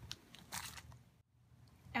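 Faint, brief handling rustle about half a second in, then a moment of dead silence just past the middle where the recording is cut.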